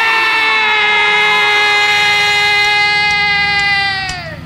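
Surf-rock instrumental: a single long note held over a quiet band, sagging slightly in pitch, then sliding downward near the end before the full band comes back in.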